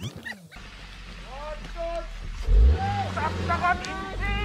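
A Hyundai hatchback's engine working hard under load on a steep, rocky dirt climb, building to a loud low surge about two and a half seconds in. People's voices call out over it.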